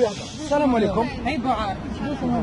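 Voices talking in a street crowd, with a short hissing noise near the start.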